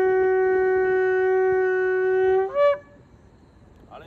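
A long twisted-horn shofar blown in one long steady blast, ending about two and a half seconds in with a brief upward jump to a higher note before it cuts off.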